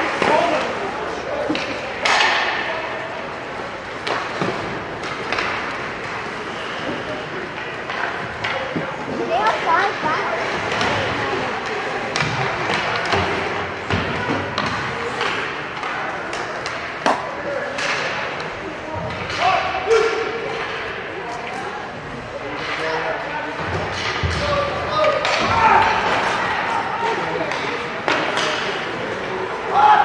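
Ice hockey game sound: spectators' voices and shouts over repeated sharp clacks and thuds of sticks, puck and boards.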